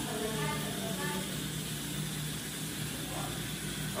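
Faint talking in the first second or so, over a steady hiss and low hum of kitchen room noise.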